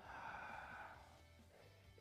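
A man's long breath out, about a second long and fading away, as he releases a held stretch.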